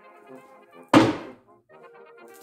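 A single solid thunk about a second in as the plywood beehive drawer is set back down on the table, over background music.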